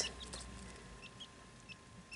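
A few faint, short, high cheeps from a newly hatched quail chick, spaced out over a low steady hum.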